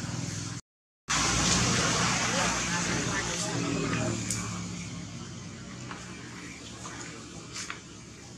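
A motor vehicle going by, loud just after a brief dropout of sound and fading away over the next few seconds, with a few sharp clicks near the end.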